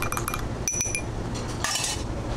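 Metal bar spoon stirring sugar into espresso in a small glass, clinking rapidly against the glass, then a few louder ringing clinks about a second in. A short hissy scrape follows near the end.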